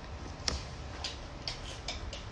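A handful of faint, short clicks, unevenly spaced, over low steady room noise.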